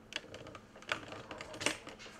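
Computer keyboard keys tapped in a quick, irregular run of about a dozen clicks, the loudest near the end, as presentation slides are paged forward.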